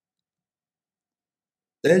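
Complete digital silence, then near the end a man's voice starts a radio call with the word "Delta".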